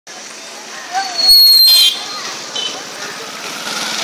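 Busy street ambience with people's voices in the background. A loud, shrill high tone cuts in about a second and a quarter in and stops about half a second later.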